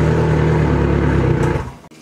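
Yamaha 115 four-stroke outboard engine running steadily just after being cranked and catching on a lithium starting battery; the engine sound fades away shortly before the end.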